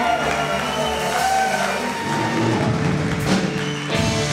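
Live rock band playing: electric guitars, bass, drums and keyboard, with a sharp drum or cymbal hit about three seconds in.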